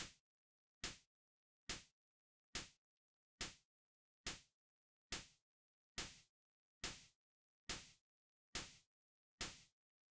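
A raw synthesized noise snare from Serum's noise oscillator, with no effects yet, repeating about every 0.85 s on beats two and four. Each hit is a short burst of hiss with a quick decay, and the tails get slightly longer in the second half as the amp envelope's decay is reshaped.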